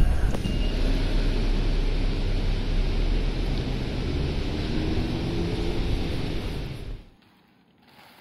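Steady city street noise with road traffic, heavy in the low end. It cuts off abruptly about seven seconds in.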